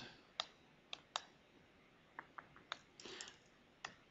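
Faint, irregular clicks from working a computer's pointer, about seven spread over four seconds.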